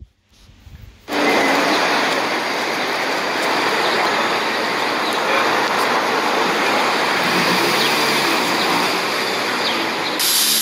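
A steady, loud rushing hiss with no clear pitch, starting suddenly about a second in after a moment of near silence.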